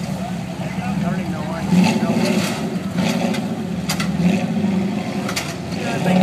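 Rock-crawler buggy's engine running under load as it crawls over a rock ledge, revving up in several short bursts, with a few sharp knocks.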